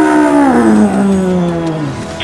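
A giant biomechanical robot-beast's long howling roar: one drawn-out pitched cry that slides slowly downward in pitch and tapers off near the end.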